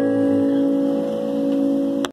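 Final guitar chord of the song ringing out and slowly fading, with several tones held and no new strum.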